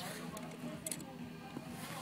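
Quiet outdoor background noise, with a couple of faint clicks.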